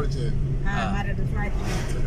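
Steady low rumble of a car's engine and tyres, heard from inside the cabin while driving. A voice speaks briefly about halfway through.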